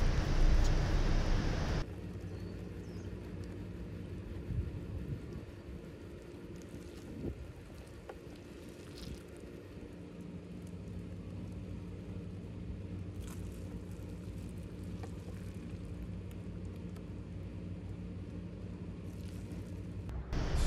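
Faint patter of fermented plant juice dripping and splattering into a plastic tub as soaked noni leaves are squeezed out by hand, over a low steady hum. A louder hiss cuts off about two seconds in.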